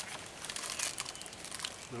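A wrapper crinkling and rustling irregularly as it is handled.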